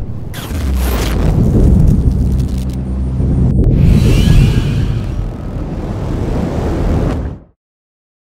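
Animated logo intro sound design: heavy low rumbling hits and whooshes over music, cutting off suddenly near the end.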